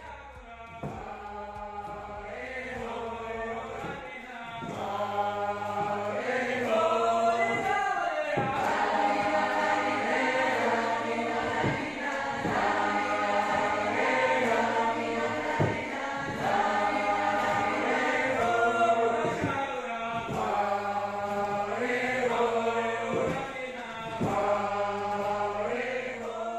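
A vocal ensemble singing a Georgian polyphonic song: several voices in close harmony over a sustained low drone, swelling in the first few seconds and then holding steady.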